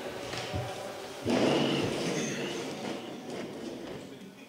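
People getting up from a press-conference table: chairs pushed back and scraping, with movement and rustling, loudest for about two seconds starting just after a second in.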